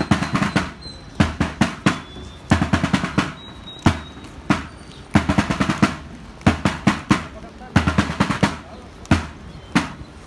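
Military field drum beating a marching cadence: short rolls and single strokes in groups that repeat about every 1.3 seconds.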